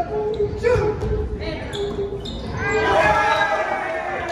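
A volleyball being bounced on a hardwood gym floor, several knocks in the first couple of seconds. Players' voices call and shout around it in a large hall, loudest near the end.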